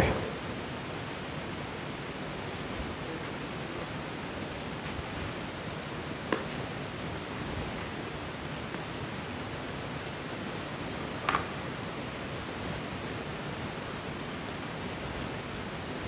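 Steady hiss of background noise, with two short faint knocks, about six and eleven seconds in.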